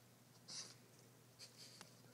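A Boston terrier chewing a raw potato: a few faint, short crunches and clicks, one about half a second in and two or three more near the end.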